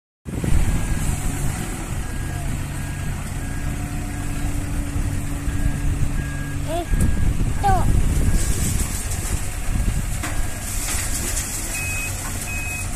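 Diesel engine of a CAT 444F backhoe loader running under hydraulic load as its front loader lifts a car wreck, with a steady hum that swells about eight seconds in. A reversing alarm beeps about once every 0.7 s through the first half, and a few short squeals come about seven seconds in.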